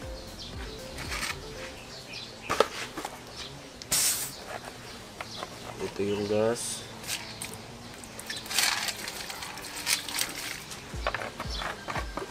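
Gasoline poured from a plastic jug into an aluminium basin over disassembled carburetor parts, irregular splashing and trickling with the strongest rushes about 4 s and 8–9 s in, plus a few short clicks from handling.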